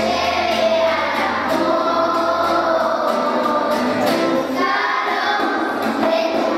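Children's choir singing a song together, with acoustic guitar accompaniment.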